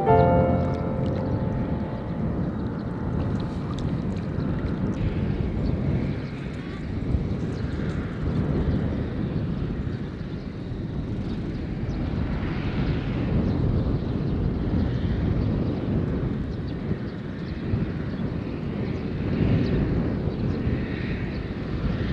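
Outdoor ambience: a low rumble that rises and falls in slow swells, just after piano-like music ends at the very start.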